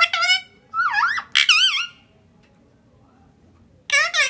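Indian ringneck parakeet whistling in a series of bright notes: a few short falling ones, then a rising glide and a wavering warble. After a pause of about two seconds, more whistled notes start near the end.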